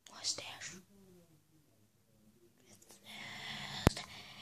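A boy's whispering voice for about the first second, then quiet. From about three seconds in there is a hissing rustle of the phone being handled, with one sharp click near the end.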